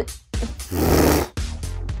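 A person's short breathy sputter, a noisy vocal sound like a snort or blown-out breath lasting under a second, starting about half a second in and ending well before the next words. A low steady music bed runs under it.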